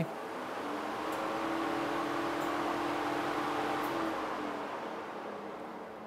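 A car's electric engine-cooling fan comes on during a key-on engine-off self-test, spinning up to a steady whirring hum and then winding down over the last couple of seconds.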